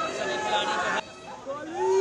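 A crowd of people chattering and calling out at once. The babble cuts off abruptly about halfway, and near the end one voice gives a loud, drawn-out shout.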